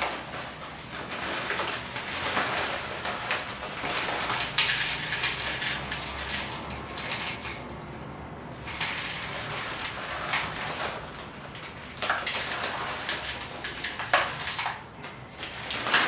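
Plastic bag crinkling and rustling as caustic soda is shaken out of it into a plastic cup on a digital scale, with scattered clicks of the solid falling into the cup. Briefly quieter about eight seconds in.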